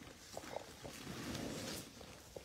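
Faint rustling and scraping as a person wriggles on his back across grass, sliding a large plastic-wrapped bag of dog food with his shoulders, a little louder in the second half.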